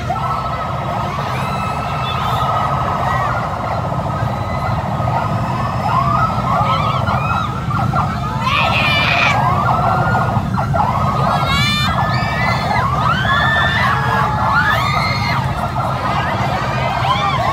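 Several police escort sirens wailing at once, their quick rising-and-falling sweeps overlapping continuously over a steady low rumble.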